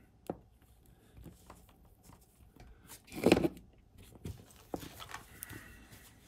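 Hands working modelling clay on a tabletop: scattered small clicks and taps, with one louder, brief handling noise about three seconds in.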